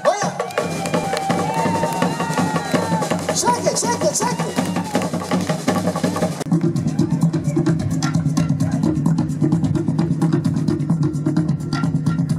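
Music with fast Polynesian drumming, quick knocking strokes under a bending melody line. About six and a half seconds in it changes abruptly to a low steady drone under rapid drumbeats.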